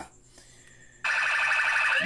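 Electronic alarm-like sound effect of a news logo sting: after a second of quiet it starts suddenly and holds loud and steady, with a rapid warble.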